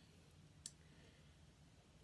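Near silence: room tone, with one faint short click about two-thirds of a second in.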